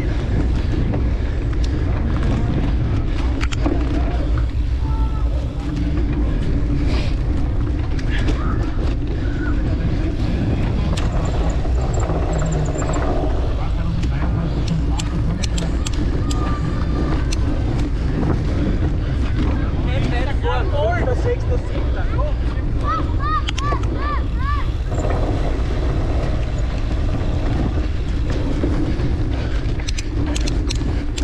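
Wind buffeting a bike-mounted action camera's microphone, with the cyclocross bike rattling and clicking as it rides hard over bumpy grass. Voices call out briefly about two-thirds of the way in.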